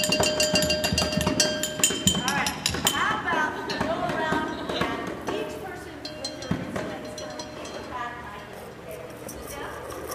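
Hand percussion being played: quick drum strikes and ringing, bell-like clinks in the first two or three seconds, then thinning out under voices as the level falls.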